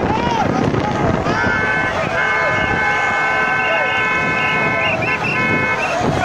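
Many voices shouting over a steady outdoor din, with several long steady high tones, like horns, held from about a second in until near the end.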